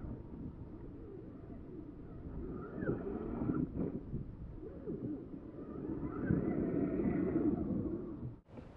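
Wind noise on the microphone, uneven and growing louder in the last couple of seconds, with a few short, faint rising chirps.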